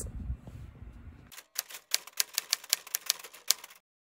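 Typewriter key clacks, about fifteen quick irregular strikes starting a little over a second in and stopping suddenly near the end. Before them, a low rumble that cuts off abruptly.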